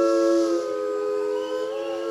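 Several singers holding a sustained chord in close harmony with no instruments, about three notes stacked; in the second half the notes begin to waver with vibrato.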